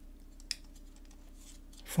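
A single small plastic click about half a second in as the two halves of a plastic model-kit fuselage are pressed together, the kit's locating pins snapping home; otherwise faint room tone.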